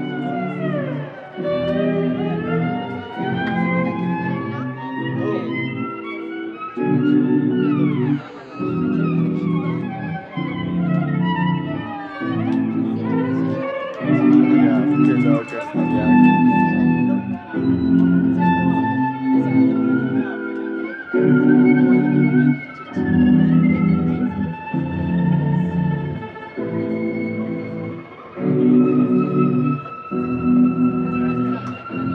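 Electric violin played live over its own looped layers: a repeating pulse of low chords, with high bowed lines that slide up and down in pitch above it.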